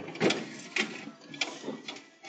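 Irregular knocks, clunks and scrapes of a heavy wheeled load being manoeuvred up a step by hand, about five sharp clatters over two seconds.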